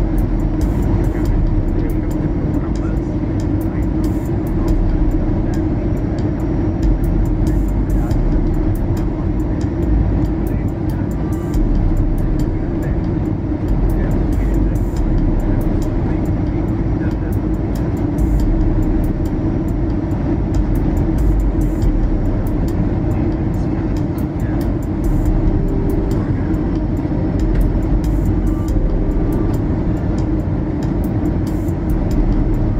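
Steady roar of an Airbus A320's engines and airflow heard from inside the cabin during the descent on approach, with background music mixed in.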